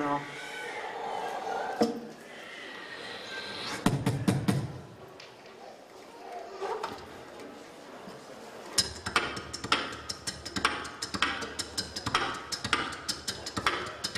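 Beatboxing into a handheld microphone. The first several seconds hold soft vocal effects and one low thump about four seconds in. About nine seconds in, a steady beat of sharp clicks and snare-like hits starts, about three a second.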